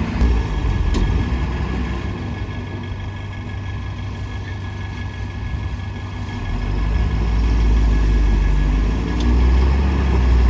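Diesel engines of a loaded Tata tipper truck and a JCB 3DX backhoe loader running at idle. About six and a half seconds in, a deeper, louder engine rumble builds as the loaded tipper begins to pull away.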